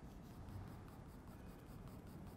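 Faint sound of a clutch pencil's graphite lead on paper, drawing repeated hatching strokes.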